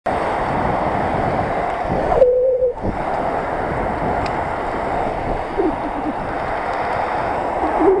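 Wind rushing over the microphone of a camera on a moving bicycle, a steady noisy roar. About two seconds in, a short steady tone sounds for about half a second.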